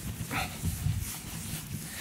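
Faint footsteps with low room noise: a few soft, uneven thuds in the first second, and a brief faint higher sound about half a second in.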